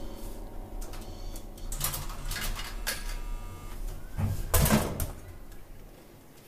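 Scattered handling noises, rustles and light knocks over a steady low hum, with a louder thud or knock about four and a half seconds in.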